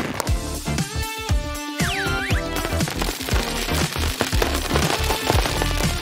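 Small beads rattling as they pour out of a plastic bottle into a balloon stretched over its mouth, a rapid crackle of many small clicks. Background music plays throughout.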